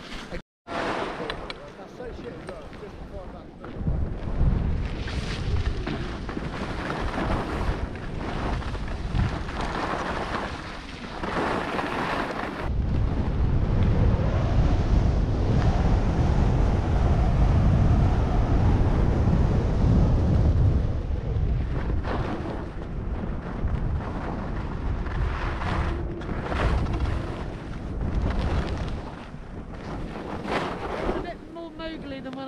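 Wind buffeting the microphone of a helmet-mounted camera, mixed with skis sliding and scraping over snow on a downhill run. The rumble grows louder about four seconds in and is heaviest from about the middle on.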